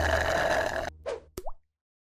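Cartoon-style sound effects closing an animated logo sting: a hissing swish that cuts off abruptly about a second in, then a short blip, a sharp click and a quick rising pop.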